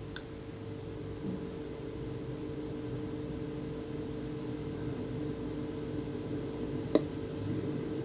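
Quiet room tone: a steady low electrical hum over faint hiss, with one short click about seven seconds in.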